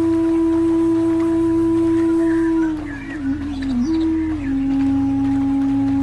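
Calm ambient music in a Japanese style: a flute holds a long note, slides down through a short wavering ornament about three seconds in, then settles on a lower held note, over a low sustained drone.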